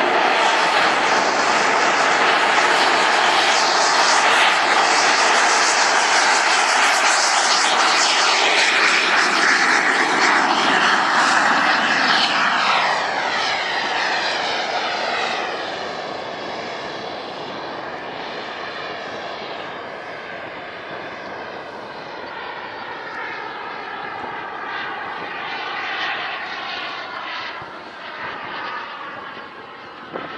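Turbine engine of a radio-controlled F-16 model jet at high power, loud for the first dozen seconds as it leaves the runway. Then it grows fainter as the jet flies away, its whine sweeping up and down in pitch as it passes.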